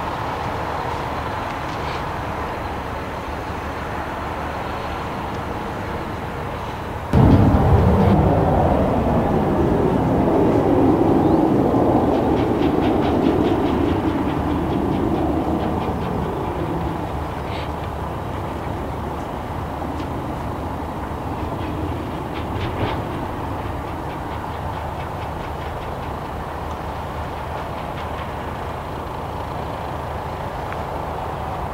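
A jet aircraft passing: the noise jumps up suddenly about seven seconds in and dies away over the next nine seconds or so, over a steady background engine hum.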